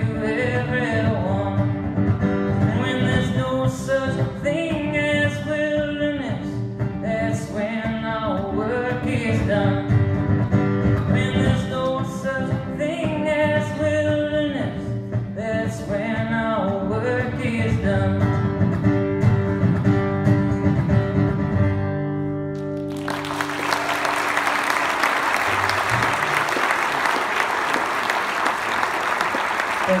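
Acoustic guitar played with a man singing. The song ends on a ringing final chord about three quarters of the way through, and an audience's applause follows.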